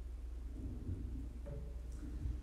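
Steady low electrical hum with a few faint small noises as a man takes a drink of water.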